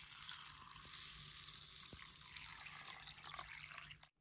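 Water poured in a steady stream from a steel vessel into a steel bowl of dry urad dal and rice, splashing onto the grains as the bowl fills, to soak them.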